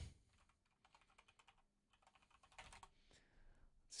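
Faint typing on a computer keyboard: two short runs of quick keystrokes.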